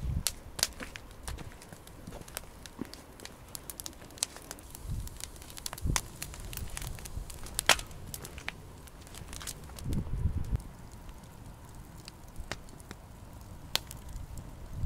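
Wood logs burning in a metal fire pit, crackling with irregular sharp pops and snaps, and a few low thuds.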